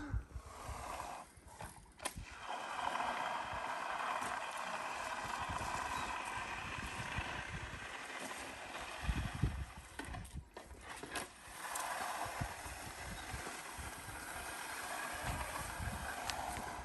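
Bull float sliding over a freshly poured, still-wet concrete slab: a soft, steady swishing scrape that breaks off for a moment about ten seconds in and then resumes. A few low rumbles come in around nine seconds and near the end.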